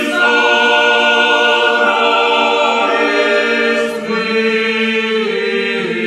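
Chamber choir singing a cappella in several parts, holding long sustained chords, with a short break for breath about four seconds in.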